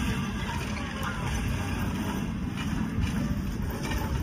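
Steady low outdoor rumble with wind buffeting the microphone, with a few faint ticks.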